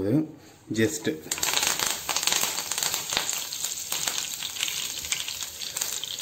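Curry leaves frying in hot coconut oil in a nonstick pan. The crackling and sizzling set in suddenly just over a second in and keep going.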